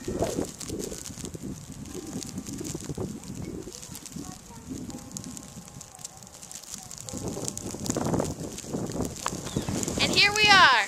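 Footsteps crunching through fresh snow, irregular, with low rumble on the microphone.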